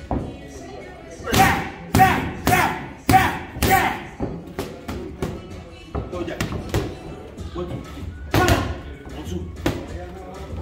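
Boxing gloves striking focus mitts: a quick run of five hard pops about a second in, lighter shots after that, and two more hard pops near the end.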